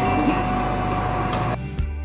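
Room noise with a steady high tone, cut off abruptly about one and a half seconds in, replaced by calm background music.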